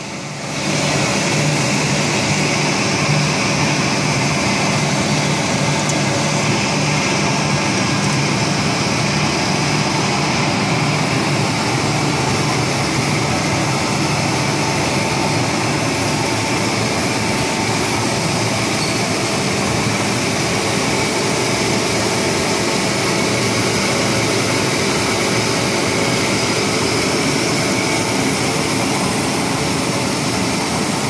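Multi-wire copper wire drawing machine with in-line annealer running: a loud, steady mechanical drone and whir that never breaks, with a low hum that is strongest in the first ten seconds or so.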